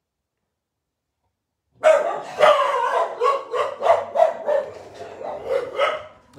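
Several pet dogs barking loudly in quick succession, about three barks a second, starting suddenly about two seconds in after complete silence.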